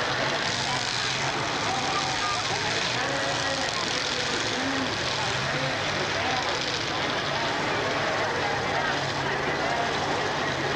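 Demolition derby cars' engines running in a steady drone, with spectators' voices mixed in over them.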